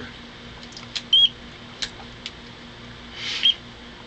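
A few light clicks and two brief high squeaky chirps as the rotary dial of an Amprobe handheld digital multimeter is turned, over a faint steady hum.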